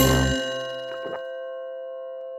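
A single bell-like clock chime struck once, with a low thud at the strike, then ringing on and slowly fading.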